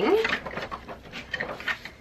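Paper pages of a wire-o bound planner being flipped by hand: a few soft, quick paper flicks and rustles.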